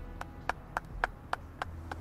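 One person clapping by hand, sharp even claps about three or four a second.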